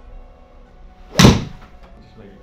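A golf iron striking a ball into a simulator screen: one sharp crack about a second in, dying away quickly.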